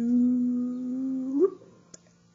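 A man humming one held note for about a second and a half. The pitch rises as it ends, and a single short click follows.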